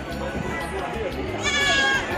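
A goat bleating once, a short quavering call about a second and a half in, over the chatter of a crowd on a stone stairway.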